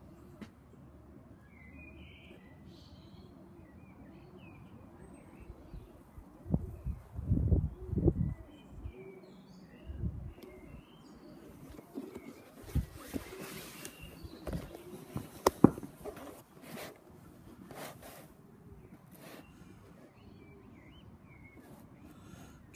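Quiet outdoor dusk ambience with small birds chirping faintly in the first half. Low rumbling bumps on the microphone come in the middle, followed by a run of sharp clicks and rustles of handling, the loudest about two-thirds of the way through.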